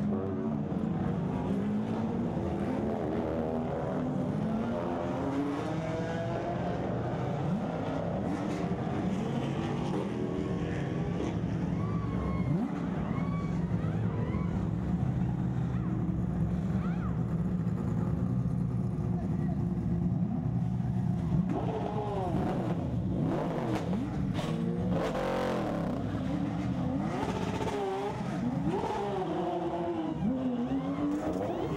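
Race car engines running in a pit lane: a steady engine drone, with cars passing by in rising and falling pitch over the first several seconds. People talk near the end.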